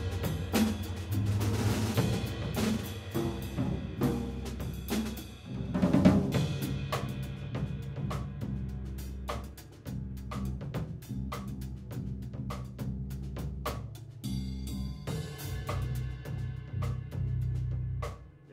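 Live jazz combo playing an instrumental passage: frequent drum-kit hits over electric bass and keyboard.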